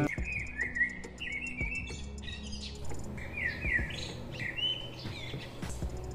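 Birds chirping in quick runs of short calls, with a few faint clicks and a low steady hum underneath.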